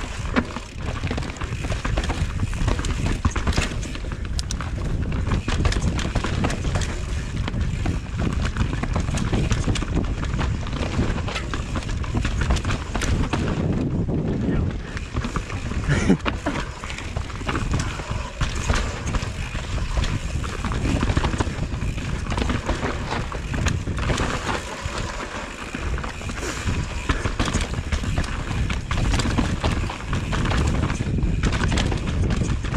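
Mountain bike riding down a rooty dirt trail: continuous tyre rumble over dirt, roots and rock with a dense run of knocks and rattles from the bike.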